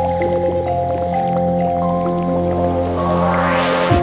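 Psychedelic trance music: held synth chords over a low bass drone, with no beat yet, and a rising noise sweep building through the last second.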